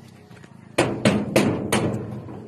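Four sharp knocks, about a third of a second apart, starting a little under a second in: knocking at a house to call whoever is inside.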